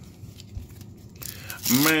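A waxed-paper trading-card pack wrapper from 1990 Topps Traded being handled and torn open, with light handling clicks and then a brief crinkling tear about a second in. A man's voice comes in near the end.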